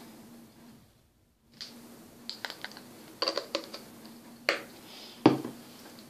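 A string of small, sharp clicks and taps of makeup items being handled and set down, about ten in a few seconds, the loudest a fuller knock near the end.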